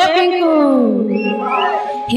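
Ghuduka, a Sambalpuri folk friction drum, sounding one pitched call that slides down steadily over about a second, then holds a low note.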